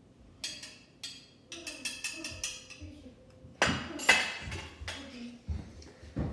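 A run of clinks and taps, each with a brief ring, as a small bottle and funnel are handled on a stone countertop. There is a quick cluster of light taps about two seconds in and the loudest pair of knocks a little past the middle.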